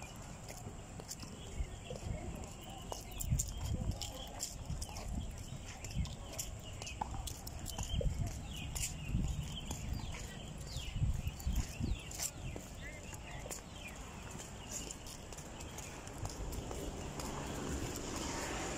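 Irregular low thumps and knocks of footsteps and a hand-held phone being moved about while walking.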